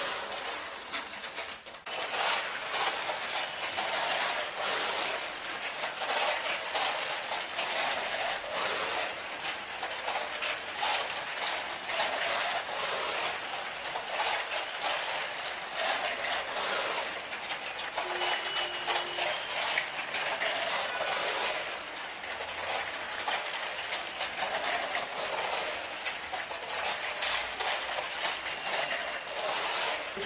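Homemade electric model train running around its foil-covered track, giving a steady, rattling clatter of rapid clicks.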